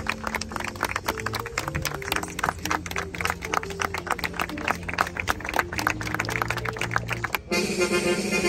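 A crowd clapping over music with held low notes that step from one pitch to the next. About seven and a half seconds in, the sound cuts abruptly to a different, brighter stretch of music.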